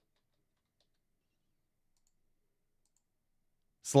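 Near silence, with a voice starting to speak just before the end.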